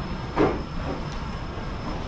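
Steady low room rumble, with one short, louder sound about half a second in.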